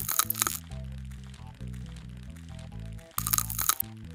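Two short bursts of a scraping, crackling sound effect for a scalpel scraping ticks off skin, one at the start and one about three seconds later, over steady background music.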